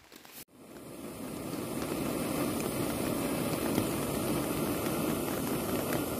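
Small gas-canister backpacking stove burning under a pot, a steady hiss that comes in about half a second in and swells over the next second before holding even.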